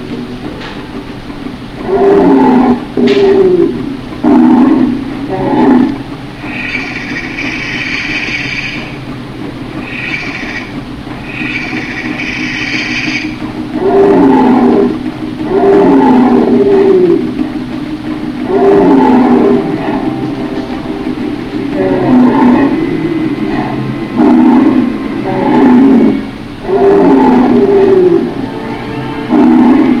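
Monster-like roars voicing toy dinosaurs in a fight, each about a second long and coming in runs of two or three, with two higher, shrieking calls about seven to thirteen seconds in. A steady low hum runs underneath.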